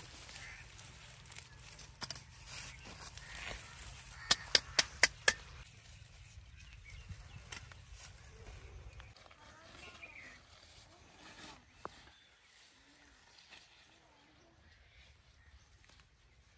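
Hands pulling garlic plants from garden soil, stems and leaves rustling. A low rumble runs until about nine seconds in, and a quick run of five sharp clicks comes about four seconds in.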